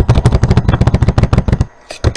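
Computer keyboard typing close to the microphone: a fast run of loud keystrokes, about ten a second, each with a low thump, stopping shortly before the end.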